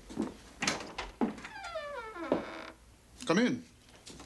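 Footsteps on a wooden floor, then a wooden door's hinges creaking as it swings open: one long creak falling in pitch that stops abruptly. A short wavering creak follows near the end.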